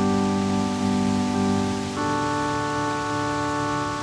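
Piano playing slow, held chords that change every second or two.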